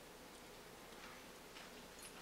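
Near silence: quiet courtroom room tone with a few faint, irregular ticks.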